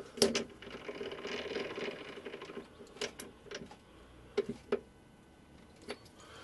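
Light metal clicks and knocks as a small aluminium part is set in a three-jaw lathe chuck and the jaws are wound in with the chuck key, with a quieter steady mechanical whirring from about half a second in to about two and a half seconds.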